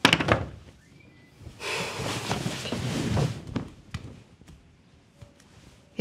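Wooden frame being handled: a quick cluster of knocks as wood strikes wood, then under two seconds of rough scraping, then a few faint taps near the end.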